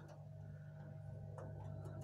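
Quiet background with a steady low hum and a faint steady higher tone, broken by a single faint click about one and a half seconds in.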